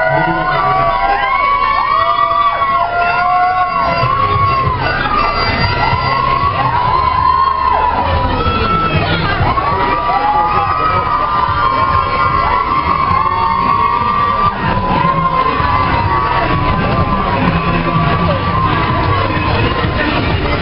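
Many children shouting and cheering together in high calls that rise and fall, overlapping one after another, over a low steady rumble.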